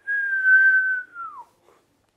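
A man whistling a single high note that holds steady for about a second and then slides down in pitch.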